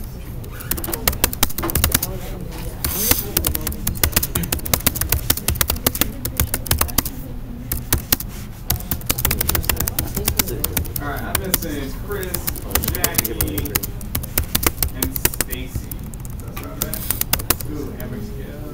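Typing on a Chromebook keyboard: a fast, uneven run of key clicks that goes on throughout, with voices murmuring in the background, more clearly about two-thirds of the way in and near the end.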